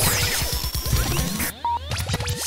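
Radio station ident: electronic music with whooshing sweeps and gliding tones over a rapid pulsing beat, with a short steady beep near the end.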